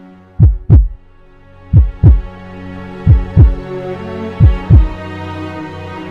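Heartbeat sound effect: four double thumps, lub-dub, about one beat every 1.3 seconds, each thump low and dropping in pitch. Underneath is a sustained music drone, and the beats stop about five seconds in.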